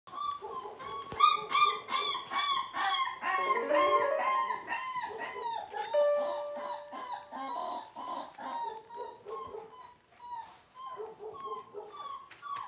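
Border collie puppy whining and crying over and over in short rising-and-falling cries, several a second, thinning out in the second half. A steady electronic note, likely from the musical play mat it is on, sounds for about a second midway.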